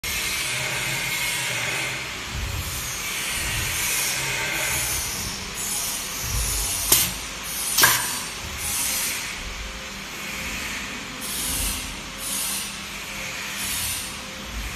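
Pneumatic perfume-bottle pump crimping machine cycling: repeated surges of compressed-air hiss from its valves and cylinders, with two sharp clicks about a second apart midway as the crimping head works on the bottle.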